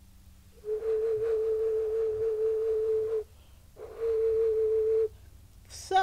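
Handmade clay whistle blown twice, each time giving one steady pure note at the same pitch with a little breath noise; the first note lasts about two and a half seconds, the second just over a second. The newly attached mouthpiece is being tested, and it sounds.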